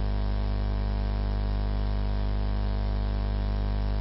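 Steady electrical mains hum in the recording or sound system: a low hum with a row of faint higher overtones, over light hiss.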